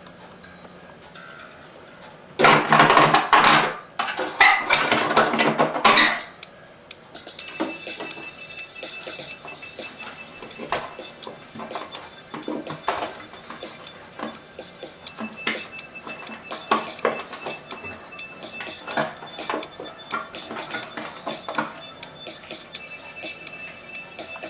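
Aluminium foil crinkling with cat litter grains rattling on it as hands press and handle the foil pan. The loudest part comes in two crackling bursts a few seconds in, followed by lighter rustles and ticks, with faint music behind.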